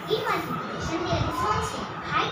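Only speech: a young girl talking in a child's voice.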